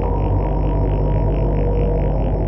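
Ambient synthesizer music: a low steady drone with a soft pulsing texture, about four pulses a second.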